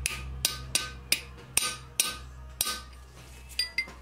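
A hammer drives a chisel punch into the top edge of an old cylinder sleeve in a 4D55T turbo-diesel block: about nine sharp, ringing metal taps, a third to half a second apart, with a short pause near the end. The taps are opening a small gap between the sleeve and the cylinder wall. A steady low hum runs underneath.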